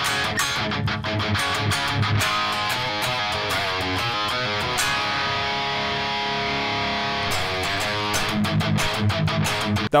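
Heavy metal riff on an electric guitar played over programmed drums, with a chord held for about two seconds in the middle before the riff and drum hits pick up again.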